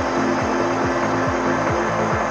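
Progressive trance track: a kick drum that falls quickly in pitch, a little over twice a second, under sustained synth tones and a dense mid- and high-frequency texture.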